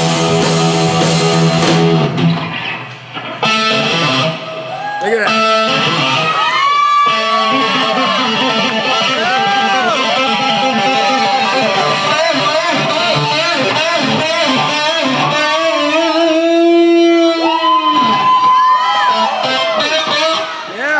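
A rock band plays for the first two seconds, then drops out and an electric guitar carries on alone through a loud amplifier: a live solo of bent, wavering notes, ending in a long held note near the end.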